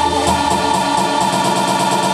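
Instrumental backing track of a pop song playing steadily, with held keyboard chords.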